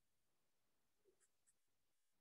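Near silence: room tone, with two very faint ticks about a second and a half in.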